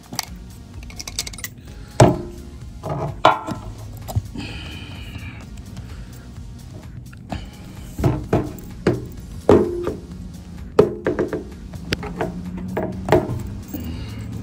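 Background music under a run of sharp metal clicks and scrapes: pliers and a screwdriver gripping and prying at a screw stuck in a tyre tread. There is one loud click about 2 s in, and a close cluster of clicks from about 8 to 13 s.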